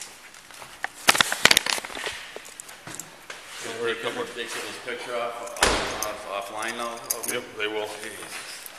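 A patrol SUV's door is shut with one slam about halfway through. A few sharp clicks and knocks come about a second in.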